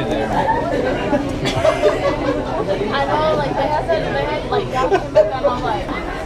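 Several people talking and chattering over one another in a crowded restaurant dining room, with no single clear speaker.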